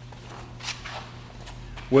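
A steady low hum with a few faint, brief rustles of a sheet of paper being handled.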